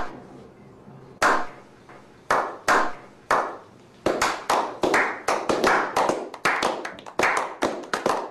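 A slow clap from a small group: single hand claps spaced about a second apart that quicken into steady applause about four seconds in.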